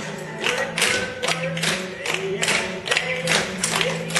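Tap shoes of a group of dancers striking a hard floor in rhythm, sharp clicks about two to three a second, with music playing underneath.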